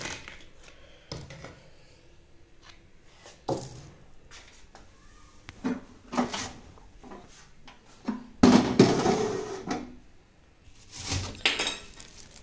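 Kitchen handling noises: scattered light knocks and clunks as things are moved about, then louder rustling in the last third as a plastic bag is handled.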